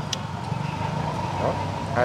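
Street traffic: a steady low vehicle engine hum, with one sharp click just after the start and faint voices in the background.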